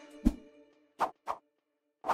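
Short logo-sting music: quick pop-like hits, one just after the start and two close together about a second in, over a faint held synth chord that fades out.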